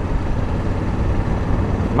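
Honda Africa Twin motorcycle cruising at road speed: a steady rush of wind and road noise over a low rumble, with no distinct engine note standing out.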